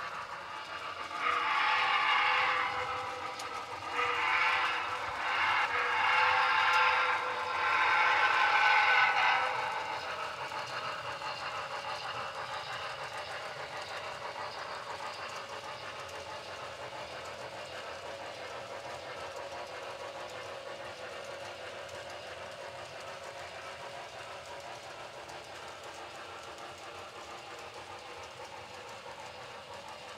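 Steam locomotive whistle blowing four blasts of several notes at once, each a second or two long, in the first ten seconds. After that a freight train rolls by steadily and faintly.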